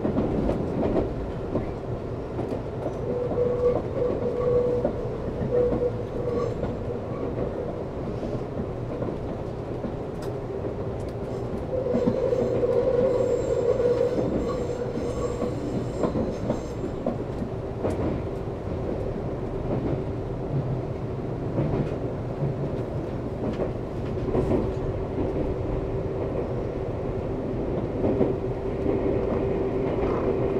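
Nankai 30000-series electric train running on mountain track, heard from inside the driver's cab: a steady rolling rumble with scattered rail clicks as it slows from about 60 to 50 km/h. Wheels squeal on the curves in short spells, loudest about twelve to sixteen seconds in.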